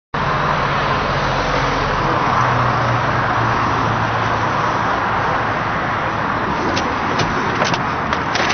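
Motor vehicles running: a steady noise of road traffic with a low engine hum that fades out after about four seconds. A few sharp clicks come near the end.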